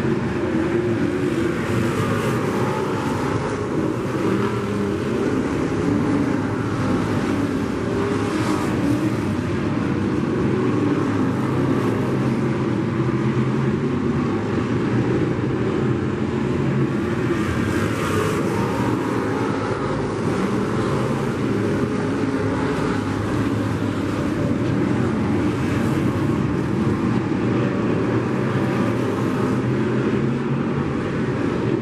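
A field of sport modified dirt-track race cars running laps, their engines a continuous loud drone that swells now and then as cars pass.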